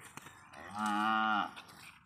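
A cow mooing once, a short call just under a second long.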